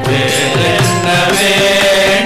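Live Carnatic devotional bhajan music: group singing, with harmonium and violin holding long notes under the voices.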